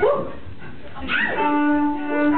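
A short whoop that glides upward, then a cello starts a long, steady bowed note about one and a half seconds in.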